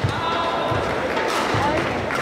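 Badminton doubles rally on an indoor court: a sharp hit at the start, then repeated thuds of footfalls and short shoe squeaks on the court mat, over the murmur of a large arena crowd.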